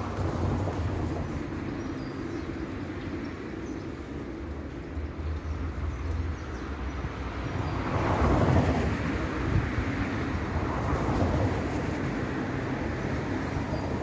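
A tram passing on its track: a steady rumble that swells about eight seconds in and then eases off.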